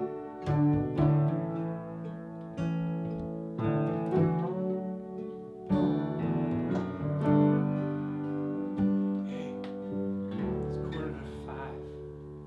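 Instrumental passage of an acoustic folk band: piano chords over acoustic guitar and upright bass, with no singing. It grows gradually quieter over the last few seconds.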